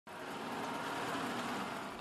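Heavy military truck's engine running, heard as a steady rumbling noise that fades in at the very start.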